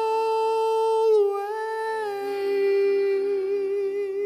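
A man's voice holding a long, wordless sung note. It slides down to a slightly lower held note about a second in, with a slight wobble. Soft accordion chords sustain beneath it.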